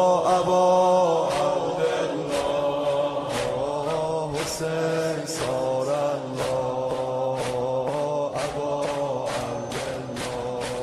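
Devotional chant invoking Imam Hussain, sung in long held, wavering notes over a regular percussive beat. The beat goes about once a second at first and quickens to about two a second past the middle.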